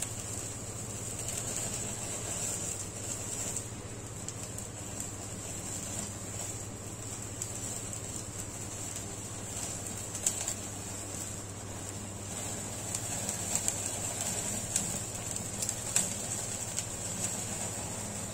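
Steady hiss and hum of a gas stove burner flame with skewered marinated chicken held in it, with a few faint crackles.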